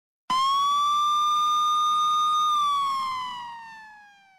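Police car siren sounding one wail: it comes on suddenly, holds a steady high pitch for about two seconds, then slides down in pitch and fades away over the last second and a half.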